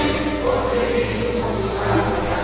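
Choral music: a choir singing long, held notes over a low musical backing.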